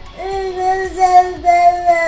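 A 10-month-old infant's voice holding one long, sing-song vowel, starting just after the beginning and sustained with small wobbles in pitch.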